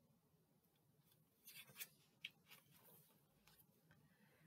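Near silence, with a few faint, brief paper rustles from about a second and a half to two and a half seconds in as a picture-book page is turned by hand.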